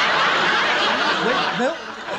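Studio audience laughing at a joke, the laughter dying down near the end.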